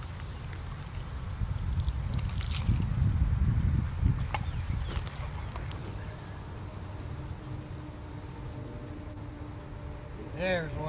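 Low rumbling noise on the camera microphone, loudest a few seconds in, with a few sharp clicks. A faint steady hum comes in about halfway through.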